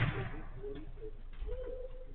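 A football struck with a sharp thud right at the start, followed by faint, drawn-out pitched calls in the background.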